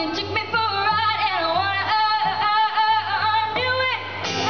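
A girl singing live into a microphone over a boy's acoustic guitar accompaniment. Her voice bends and wavers in pitch from note to note, and she holds one note near the end.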